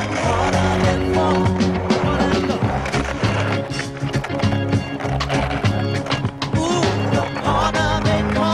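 Skateboard wheels rolling on concrete, with the clack of the board popping and landing on a ledge, under a music track with a steady bass line.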